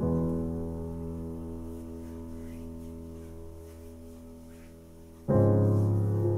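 Background piano music: a held chord slowly fades for about five seconds, then a louder new chord is struck near the end.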